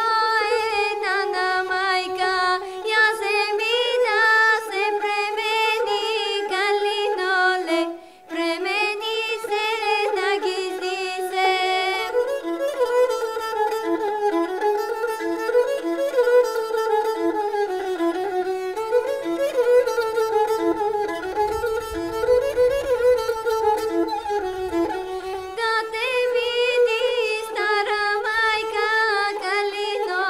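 A girl sings a Bulgarian folk song, accompanied by a gadulka, a bowed folk fiddle. The singing stops briefly about eight seconds in. From about twelve seconds the gadulka plays a solo interlude with quick ornaments, and the singing returns near the end.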